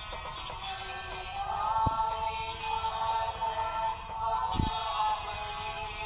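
A song: a voice singing over instrumental backing, holding one long note through the middle.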